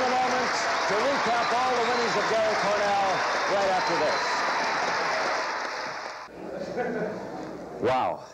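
Studio audience applauding, with excited shouts and cheers over the clapping. The applause dies down about six seconds in.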